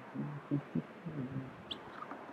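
A person's low voice murmuring a few indistinct syllables, followed by a single short high chirp near the end.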